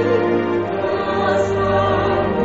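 Buddhist devotional music: a choir singing long held notes in harmony over accompaniment, with a deeper bass note entering near the end.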